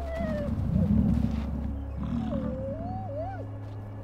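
Deep growling rumbles from the musk oxen and Arctic wolves facing off, two of them about a second long, with a thin whine that wavers up and down over them in the second half.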